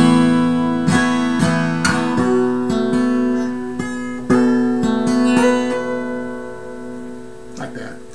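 Acoustic guitar in DADGAD open tuning playing chords, strummed and picked so that the open strings ring together. Fresh chords are struck at the start, about one and two seconds in, and again just past four seconds, then left to ring and fade toward the end.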